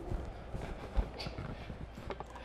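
Faint, scattered knocks and scuffs from people moving about and handling camera gear, with a low thump about a second in.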